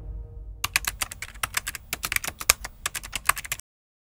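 Rapid, irregular key clicks like typing on a computer keyboard, starting about half a second in and cutting off suddenly near the end, while the tail of the music fades away beneath them.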